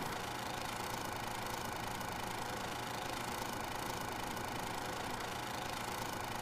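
Steady, faint hum and hiss that does not change, with faint steady tones low down and in the middle range.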